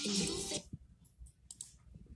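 A short loud rustle in the first moment, then a few light, sharp clicks.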